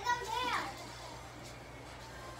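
A child's high-pitched voice in a short wordless call during the first half second or so, followed by quieter room hum.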